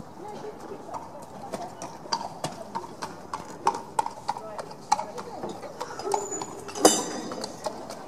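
A horse's hooves on an indoor arena floor at a walk: a run of irregular soft thuds and clicks, with one louder sharp noise about seven seconds in.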